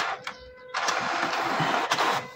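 Canon PIXMA TS5340a inkjet printer printing a page: after a quieter start, its print head starts a steady pass about three-quarters of a second in and runs on.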